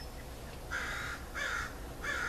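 A bird calling: two short, loud calls about a second in, then a third starting right at the end.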